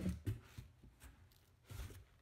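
Faint rustles and light taps of a cardboard boot box being handled, with one short, louder bump near the end.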